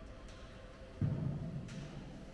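A single low thud about a second in, dying away over most of a second, heard over quiet room sound.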